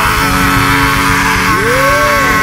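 Live gospel worship music: the band holds a sustained chord while a male lead singer lets out one long, rough held cry into his microphone, with a sung glide rising and falling near the end.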